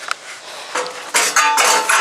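A long metal strip clattering and scraping against a rendered wall, with a metallic ringing. It turns loud about a second in.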